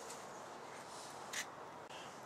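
Quiet workshop room tone: a faint steady hiss, with one brief soft hiss about one and a half seconds in.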